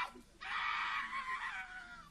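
Human voices crying out in high, drawn-out shouts: a short burst at the start, then a longer cry from about half a second in that fades near the end.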